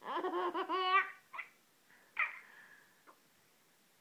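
A one-year-old girl laughing: a run of giggles for about the first second, then two short laughs.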